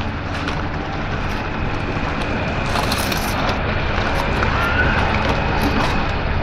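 Aluminium foil crinkling and rustling as foil cooking packets are pulled open by hand, with a short louder crinkle about halfway through, over a steady low rumble.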